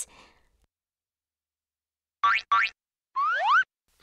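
Cartoon sound effects: about two seconds in come two quick pitched blips, then a short rising, boing-like glide.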